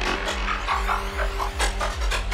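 Dark psytrance played over a club sound system: a steady kick drum a little over twice a second, with a rolling bassline between the kicks, a held synth tone and busy synth effects above.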